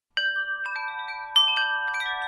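Chimes ringing: several struck tones one after another, each ringing on and overlapping the others.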